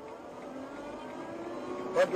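A light van's engine accelerating, heard from inside the cabin, its pitch rising slowly and steadily.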